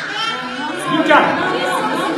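Several people talking over one another, echoing in a church hall. A louder high-pitched voice stands out about a second in.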